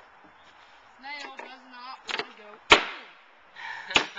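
A softer knock followed by two sharp, loud cracks, the first with a short ringing tail: fasteners being driven into the wooden deck framing.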